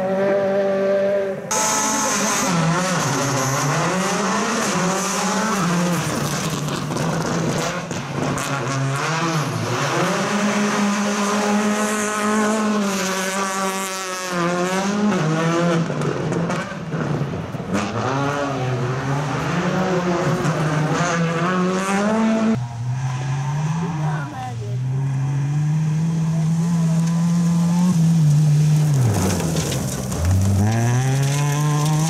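Rally car engines at full throttle, the pitch climbing and dropping again and again through gear changes and lifts, heard from several cars one after another.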